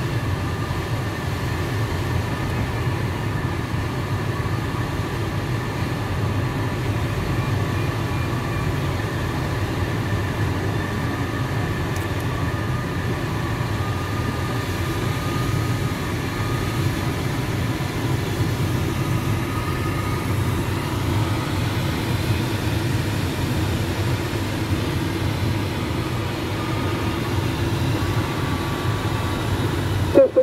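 Steady rushing airflow noise inside the cockpit of a PIK-20E glider in flight, weighted low, with a faint steady high whine behind it.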